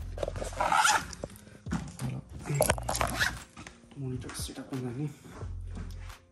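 Close rustling and handling noise with sharp clicks, loudest about a second in and again near the middle, over indistinct voices and music in a small room.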